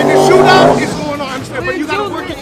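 Car engine running loud at steady high revs, dropping away under a second in, followed by shouting voices of a crowd.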